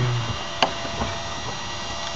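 Steady drone of a DHC-6 Twin Otter's PT6A turboprop engines and propellers heard inside the cockpit, with a couple of faint clicks about half a second and one second in.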